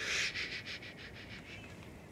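An unseen animal, which the soldiers take for a hyena, sniffing and snuffling: a sharp breathy hiss, then a quick run of soft rasping pulses that fade over about a second and a half.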